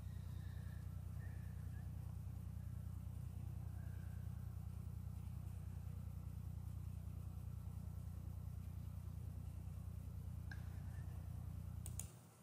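Faint, steady low electrical hum with a fast buzzing flutter from the soundtrack of an old film being played back. It cuts off suddenly when playback is paused.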